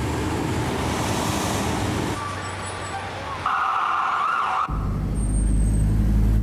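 Urban street traffic noise, vehicles passing. A held high tone sounds for about a second past the middle, then the sound changes abruptly to a deep rumble in the last second or so.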